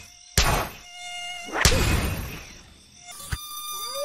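Cartoon mosquito buzzing: a steady high-pitched whine, cut by two sudden hits about half a second and a second and a half in, as at the insect. A short rising-then-falling tone comes near the end.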